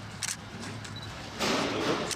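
Plastic bag rustling as a bagged load of meat is carried past: a short crinkle a quarter-second in, then a louder rustle in the last half second, over a low steady hum.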